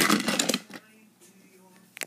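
Plastic toy train pieces rattling and clicking under a hand on a plastic playset for about half a second, then quiet apart from one click at the end.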